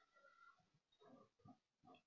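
Near silence on an open webinar audio line, with only a very faint, indistinct murmur.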